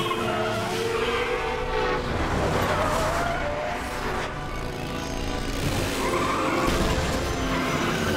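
Cartoon car-chase sound effects: cars and a motorcycle speeding, with tyre squeals, over action music.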